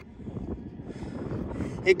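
Modified 30.5cc Zenoah two-stroke engine of a 1/5-scale HPI Baja 5T running with a low, steady rumble while its clutch bell spins. No drive is reaching the wheels, which the owner puts down to a broken pinion or possibly the slipper clutch.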